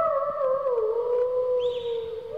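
Electric guitar holding one sustained note that wavers and slides down in pitch, then settles lower and fades.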